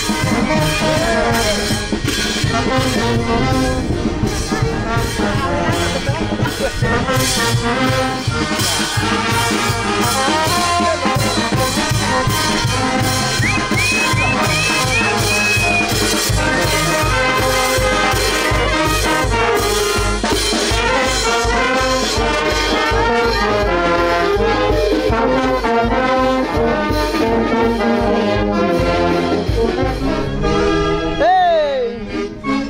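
A marching brass band playing a festive tune, with saxophones, trumpets and tubas over a steady bass-drum beat.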